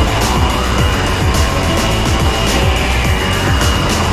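Loud background music with a heavy bass beat, running without a break.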